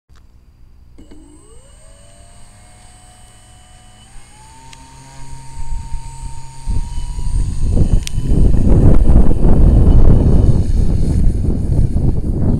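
Electric motor and propeller of a 1400 mm RC Cessna 182 model spinning up: a whine rises about a second in and steps higher around four seconds, then a loud rushing of air swells in as the throttle opens for the take-off run.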